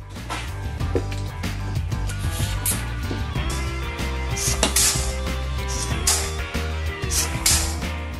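Background music with a steady beat, bass and held notes.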